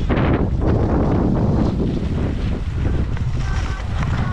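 Wind buffeting the camera microphone while skiing downhill, with a strong rush right at the start, over the hiss and scrape of skis sliding across packed snow.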